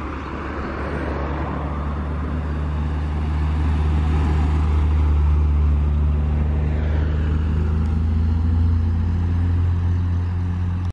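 A VW Golf II GTI with a four-cylinder engine enlarged from 1.8 to 2.0 litres, with a worked head and cam, driving past. Its engine note grows louder as it approaches, is loudest around the middle, and holds strong after it.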